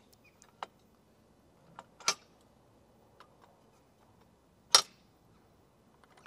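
Scattered sharp metallic clicks and taps of screws, washer and spacer being handled and set by hand on an aluminium top-box base plate, with two louder clicks about three seconds apart, the later one the loudest.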